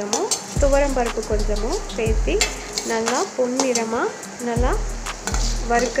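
A spoon stirring lentils frying in oil in a stainless steel pan, over a steady sizzle. The scraping strokes come roughly once a second, each with a brief rising squeal of spoon against steel and a low knock.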